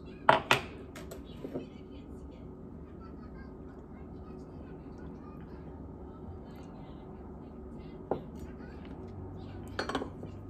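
A glass tea mug and its round wooden lid being handled, with a few sharp clinks and knocks in the first second and a half. A single knock comes about eight seconds in, then a short clatter near the end as the lid is set back on the mug. A faint steady hum runs underneath.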